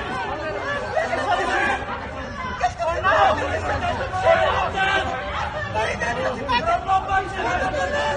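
Several people's voices talking and calling out over one another, a confused babble of bystanders remonstrating with police.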